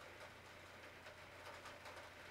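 Near silence: a faint, steady low hum with light hiss.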